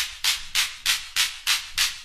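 Electro hip-hop drum-machine beat with only a hissy, shaker-like percussion hit repeating evenly about three times a second, with no bass or vocal.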